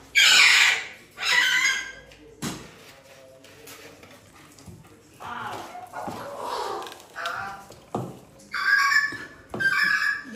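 Pet parrots calling: two loud, shrill squawks in the first two seconds, then softer calls and another burst near the end.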